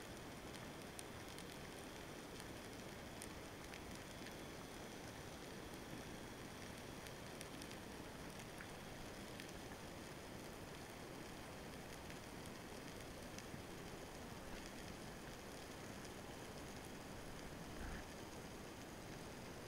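Faint underwater ambience picked up by a submerged camera: a steady hiss of water with scattered small clicks and crackles, and a soft low thump right at the end.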